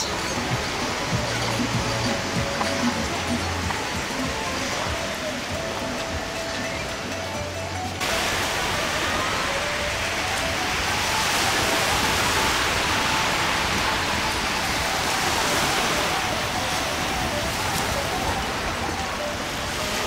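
Background music with faint bass notes over a steady hiss; about eight seconds in the sound cuts abruptly to a louder, even rush of small waves breaking on a pebble beach, the music still faintly under it.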